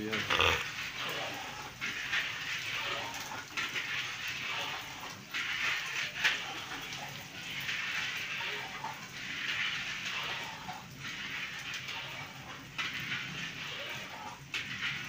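Gulab jamun balls deep-frying in a wide karahi of hot oil: a steady bubbling sizzle that swells and fades every second or so, with a few sharp ticks as a metal skimmer stirs them.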